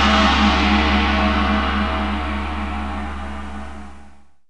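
Outro logo sound effect: the long tail of a deep cinematic hit. A low drone with a ringing tone above it fades steadily away.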